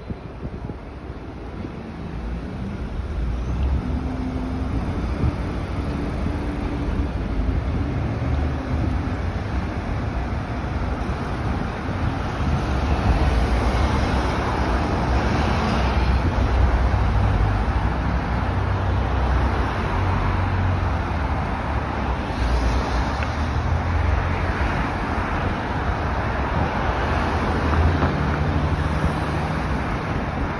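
City street traffic: engines of slow-moving and queued cars with tyre noise, a steady rumble that grows louder a few seconds in and stays louder through the second half.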